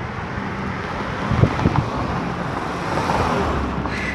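Road traffic: cars passing on a city avenue, a steady rush of engines and tyres that swells about three seconds in as a car goes by. A couple of short knocks sound about a second and a half in.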